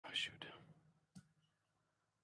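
A short whispered, breathy sound close to the microphone that fades within about half a second, then a single click about a second in.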